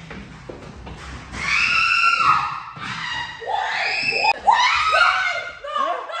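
High-pitched human screaming: several long, drawn-out cries that bend in pitch, starting about one and a half seconds in. There is a sharp knock a little after four seconds.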